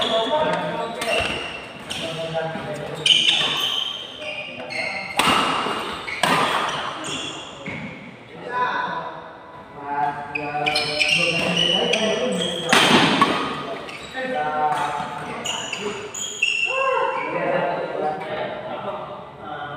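A badminton doubles rally in a large echoing hall: sharp cracks of rackets striking the shuttlecock, a few louder smashes, with players' voices and shouts throughout.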